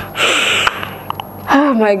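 A woman's breathy gasp, muffled by hands cupped over her mouth, in an emotional reaction of being moved. Near the end she begins to speak.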